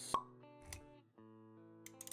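Background music with sustained notes under an animated-intro sound effect: a sharp pop just after the start, the loudest moment, then a soft low thud under a second in.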